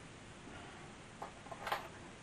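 A few light clicks and taps in quick succession a little past a second in, the last the loudest, from small parts being handled: small machine screws and a tag board being worked into a metal radio chassis.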